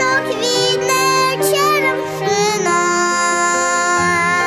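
A young girl singing a song over instrumental accompaniment, her voice sliding between notes and then holding one long note from about halfway through.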